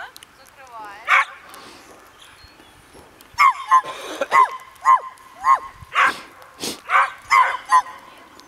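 Dog barking: one short, high bark about a second in, then a quick run of about a dozen short, high barks in the second half.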